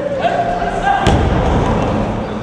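One heavy thud about a second in: a person's body thrown down onto a padded martial-arts mat in a takedown.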